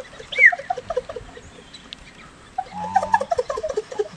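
Hand-held bird-call whistles imitating birdsong: many rapid, overlapping short chirps, with a falling whistle about half a second in and a brief held note near three seconds.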